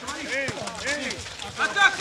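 Men's voices shouting and calling across a football pitch, several overlapping.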